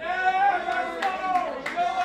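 A voice calls out in long drawn-out notes, over a few scattered hand claps.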